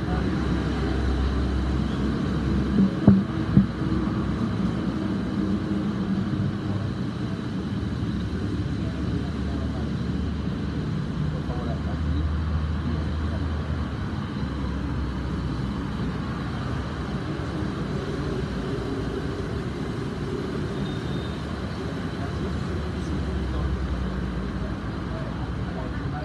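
Room ambience: a steady low rumble under faint murmured voices, with a couple of brief knocks about three seconds in.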